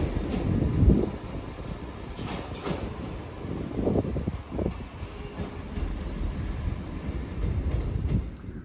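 Class 158 diesel multiple unit departing and moving away: a low engine and running rumble with a series of sharp clicks and knocks from the wheels.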